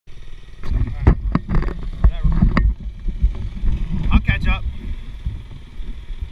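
Knocks and rubbing from a GoPro camera being handled and set on its mount, with the low rumble of idling dirt-bike engines underneath. A few short snatches of voice come through around the middle.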